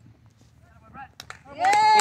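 A woman shouting a loud, high-pitched "Yay!" near the end, cheering a play, after a second and a half of faint background voices.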